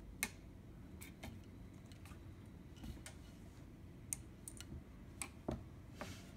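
Faint, irregular clicks and light taps from a kitten's paws and claws on a wooden floor as it pounces on and bats at a cord. The sharpest tap comes just after the start and another firm one near the end.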